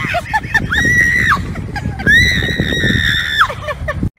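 A person screaming: two long, high-pitched screams, the second longer, with short yelps and shrieks around them.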